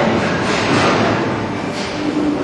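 Bowling ball rolling down the lane: a steady rumble.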